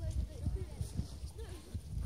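Wind buffeting the microphone in irregular gusts, a low rumble, with faint voices talking in the background.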